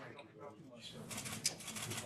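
Low off-microphone voices at the podium, then from about a second in a rapid run of clicks, typical of press photographers' camera shutters firing.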